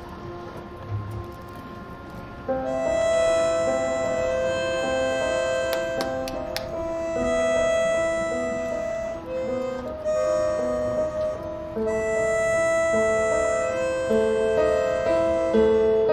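Marching band playing its field show: a soft opening, then about two and a half seconds in the band comes in louder with sustained chords over shorter low notes that shift in pitch.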